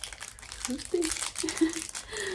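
Packaging crinkling as it is rummaged through by hand, an irregular run of crackles throughout, with a few short murmured sounds in the middle.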